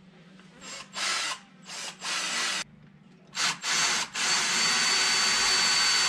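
Cordless drill boring a small pilot hole through the back of a dual USB socket holder: a few short bursts on the trigger, then a longer steady run over the last two seconds with a thin high whine.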